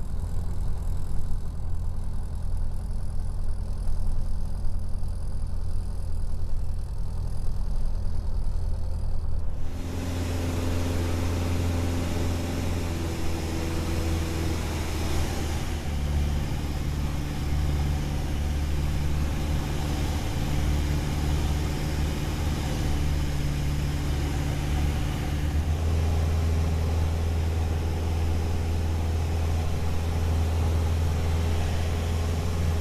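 Small experimental airplane's piston engine and propeller heard from inside the cockpit as a steady low drone. About ten seconds in it cuts abruptly from a muffled drone to a fuller engine drone with a hiss of air noise in flight.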